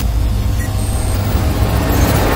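Cinematic intro sound design: a deep, steady bass rumble under a noisy hiss, with a whoosh starting to swell near the end.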